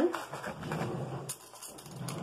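Faint, distant voices in the background with a few light clicks and knocks, picked up off-mic while someone fetches a spoon.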